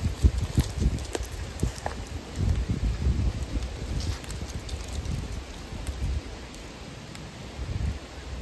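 Wind buffeting the microphone in irregular gusts that ease in the second half, with scattered faint crackles and ticks.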